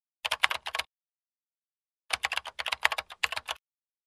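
Typing sound effect of rapid keyboard key clicks in two bursts, a short one near the start and a longer one from about two seconds in, with silence between.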